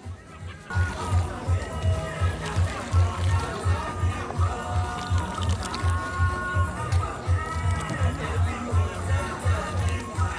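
Background music with a steady bass beat of about two to three pulses a second and a melody over it, coming in strongly about a second in.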